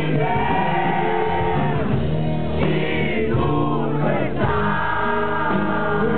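Live rock song in an acoustic arrangement: a male lead singer sings long held notes into a microphone over guitar accompaniment.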